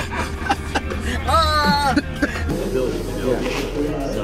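Voices inside a moving car over a steady low road rumble, with one long drawn-out note about a second in. About two and a half seconds in it cuts to the chatter of a crowd in a busy hall.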